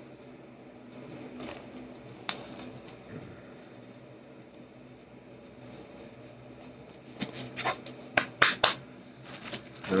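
Blue nitrile gloves being pulled on by hand: quiet rubbery rustling with a single sharp snap a couple of seconds in and a quick run of snaps and clicks near the end, over a faint steady hum.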